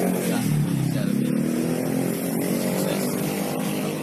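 Motorcycle engines running steadily in nearby street traffic.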